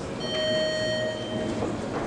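Boxing ring bell struck once, ringing for about a second, signalling the start of the round, over the murmur of the hall.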